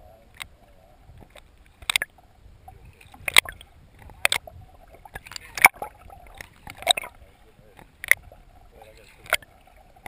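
Water sloshing around a waterproof camera held at the surface in shallow water, with sharp, irregular splashes about once a second or so and muffled voices.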